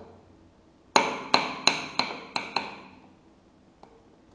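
Six sharp taps of a wooden mallet on a steel punch in a pellet-swaging die, quick and evenly spaced, each ringing bright and metallic, knocking the freshly swaged lead airgun pellet out of the die.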